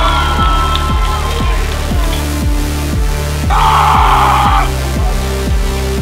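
Electronic dance music with a steady kick-drum beat, about two beats a second. Over it a high held shout is heard near the start, and a short burst of noise about three and a half seconds in.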